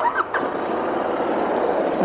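Royal Enfield Interceptor 650's air- and oil-cooled 650 cc parallel-twin engine starting up and then running steadily at idle.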